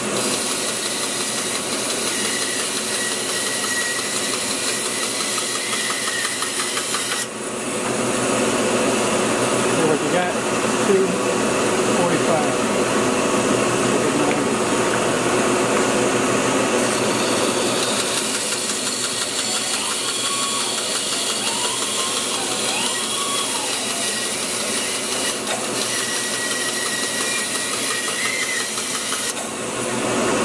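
Bandsaw running and cutting through a block of two-by-four softwood, a steady loud machine noise whose tone shifts as the wood is fed into the blade.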